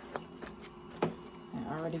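Sublimation paper being handled and peeled back from a freshly pressed puzzle blank: a few light paper rustles and ticks over a faint steady hum.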